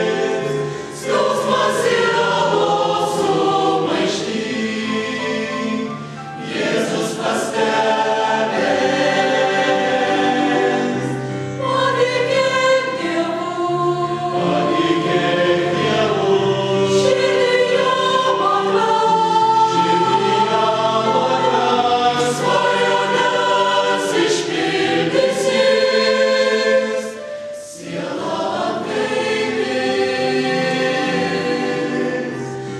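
Mixed choir of female and male voices singing a Christian hymn in several parts, with short breaks between phrases about a second in, about six seconds in and near the end.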